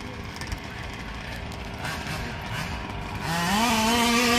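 Small two-stroke gas engine of a large-scale (1/5) RC car revving up near the end, its pitch rising quickly and then holding high and steady.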